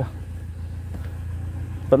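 Mercedes-Benz 190E engine idling, a steady low hum heard from inside the car's cabin.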